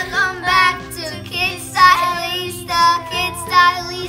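Young girls singing the channel's short theme song, a run of held notes that slide in pitch.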